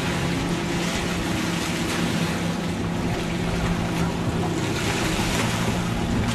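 A boat motor humming steadily under a rush of wind and choppy water.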